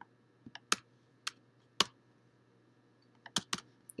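Computer keyboard keystrokes as commands are entered and run: a few separate key clicks spread over the first two seconds, then a quick run of three or four clicks near the end.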